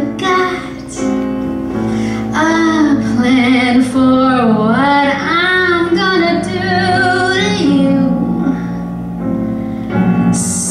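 A woman sings a musical-theatre song over instrumental backing, holding notes with a wavering vibrato and sliding between pitches.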